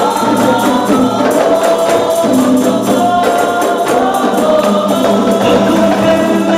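Rebana ensemble playing: hand-held frame drums with jingles beaten in a steady rhythm under group singing of an Arabic qasidah song.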